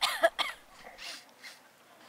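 A woman coughing: a quick run of harsh coughs at the start, then two fainter ones.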